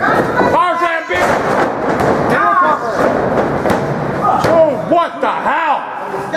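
A wrestler is slammed onto the wrestling ring mat, landing with a thud near the start. Men's excited shouting and exclamations run on throughout.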